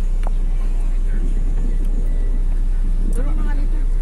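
Steady low rumble of a moving road vehicle heard from inside the cabin: engine and road noise. A faint voice is heard briefly about three seconds in.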